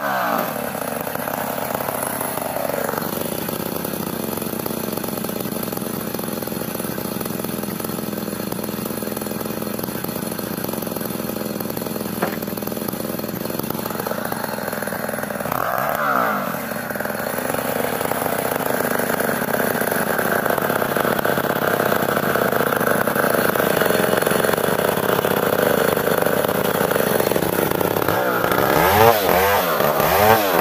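Chinese-made STIHL chainsaw running steadily while cutting through ulin (Borneo ironwood). Its engine pitch swings up and down about sixteen seconds in and again near the end.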